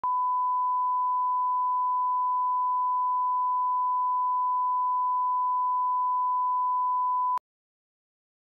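Bars-and-tone line-up tone: one steady, pure test tone at a fixed pitch, cutting off suddenly about seven and a half seconds in.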